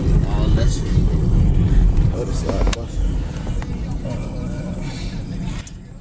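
Car driving, a loud low road and engine rumble heard from inside the cabin, with voices mixed in; the rumble drops away shortly before the end.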